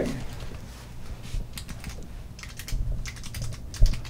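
Quick light clicks in short irregular runs, like keys being typed, over a low steady room hum, with a soft thump near the end.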